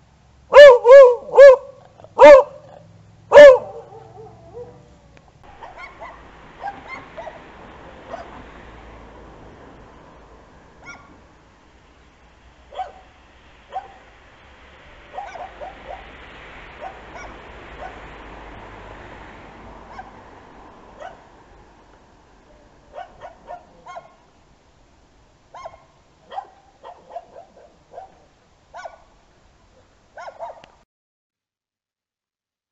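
Dogs barking from behind gates and a yard kennel at a person approaching: five loud, sharp barks in the first few seconds, then fainter, more distant barking, ending in a quick run of short barks. The barks vary from dog to dog.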